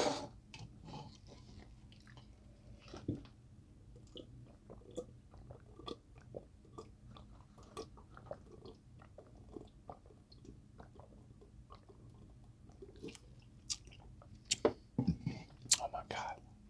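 Close-miked eating sounds: soft chewing and small mouth clicks, with swallowing as a drink is taken from a plastic pitcher partway through. A few sharper clicks and a brief low knock come near the end.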